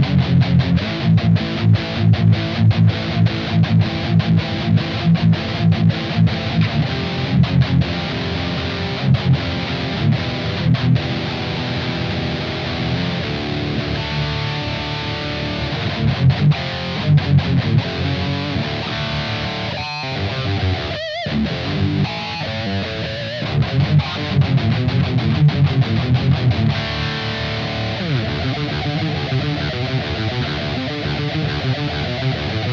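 High-gain distorted electric guitar playing a drop-D metal riff: an LTD EC256 with passive LH-150 pickups through a Joyo Dark Flame distortion pedal into a Blackstar Amped 2. Tight, stop-start palm-muted chugs alternate with held chords and single notes, with a brief break about two-thirds of the way through.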